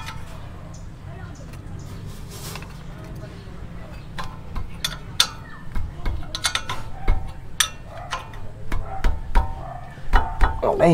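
Irregular metallic clinks and taps of a wrench on the 17 mm bolts of a Toyota Innova's front brake caliper bracket as they are tightened, starting about four seconds in, over a steady low hum.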